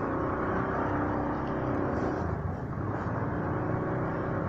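Motorcycle engine running steadily at low revs as the bike rolls slowly.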